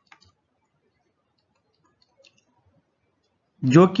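Near silence broken by a few faint clicks, one just after the start and another about two seconds in; a man's voice starts speaking near the end.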